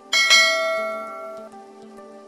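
A bright bell-chime sound effect, the kind that marks a notification bell being clicked. It strikes just after the start and rings out, fading over about a second and a half, over soft background music.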